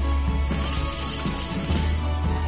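Hot oil in a stainless steel kadai sizzling as a spoonful of finely chopped green ingredients is dropped into a tempering of cumin and dried red chillies. The sizzle starts about half a second in and holds steady.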